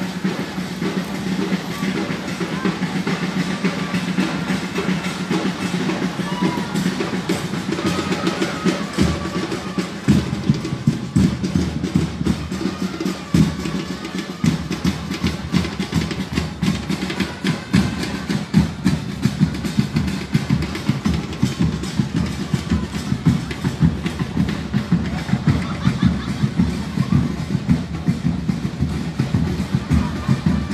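Protest drumming: drums beaten in a fast, steady rhythm that gets louder and denser about a third of the way in, over the chatter of a crowd.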